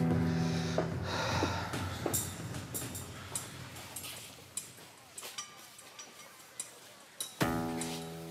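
Background score: a held chord that fades away over the first few seconds, with a few light taps, then another held chord comes in near the end.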